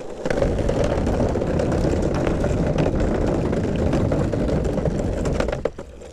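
Longboard wheels rolling over a wooden footbridge deck: a loud, steady rumble dotted with many small clicks. It starts abruptly just after the start and stops shortly before the end.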